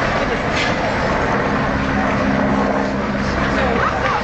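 Loud, steady rushing street noise with voices in the background. For about two seconds in the middle, a vehicle engine hums at a steady low pitch.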